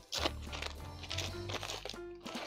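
Background music with steady held notes, over the crinkle of a foil trading-card booster wrapper being torn open and the cards slid out of it.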